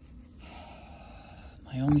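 Low, steady room noise with no distinct event, then a man starts speaking near the end, with a sharp intake of breath just before.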